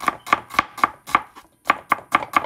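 Kitchen knife chopping sweet onion small on a cutting board, sharp regular strokes about four a second, with a brief pause a little past a second in.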